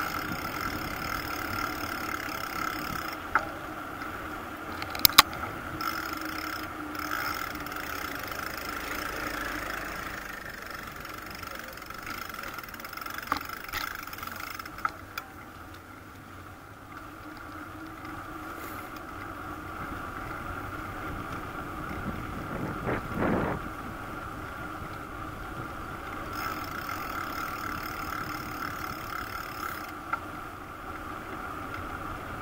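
Bicycle rolling along an asphalt road: a steady running noise from the moving bike, with a few sharp clicks about five seconds in and a brief louder swell about twenty-three seconds in.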